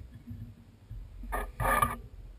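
Handling noise from fly tying at a vise: light fumbling, then two short rasping bursts near the end, the second one longer and louder.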